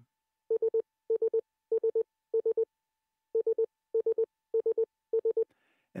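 Morse code sidetone keyed by the dot pendulum of a Begali Intrepid semi-automatic bug: eight quick bursts of dits in a steady mid-pitched beep, four bursts, a short pause, then four more. The dits are being sent to set the dot weight (dit length against the space between) by ear, and to the operator's ear they sound very nice.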